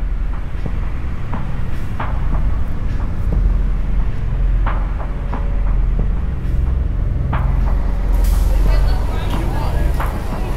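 Car engine running with a steady low rumble, with street noise and indistinct voices over it.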